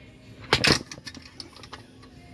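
Pressed-steel Tonka toy truck clattering as it rolls off a turntable: one sharp metal rattle about half a second in, followed by a few lighter clicks.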